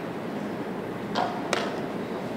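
Two short clicks of wooden chess pieces on the board, about a third of a second apart, during a fast blitz move, over a steady low hum of the playing hall.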